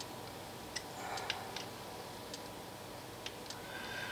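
Scattered light clicks and ticks, irregular and a few per second, from a small metal tool working the bridge hardware of an electric 12-string guitar.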